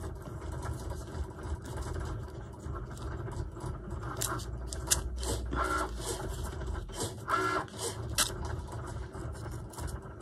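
Paper rustling and crinkling in many short rustles as small torn paper scraps are picked up and handled, over a low steady hum.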